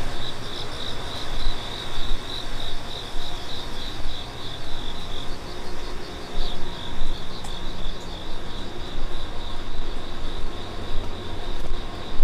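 An insect, cricket-like, chirping in a high-pitched pulsing rhythm of about four chirps a second, fading somewhat in the second half, over a low rumble of outdoor ambience.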